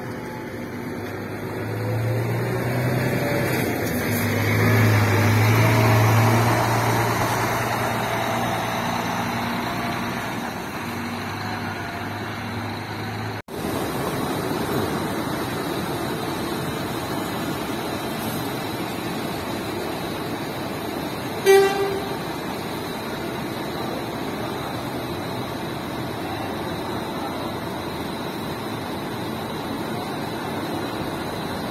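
Large coach diesel engine running close by, swelling in loudness for a few seconds and easing off. After a cut, steady engine noise of a coach moving slowly through the terminal, broken once about two-thirds of the way through by a short horn toot.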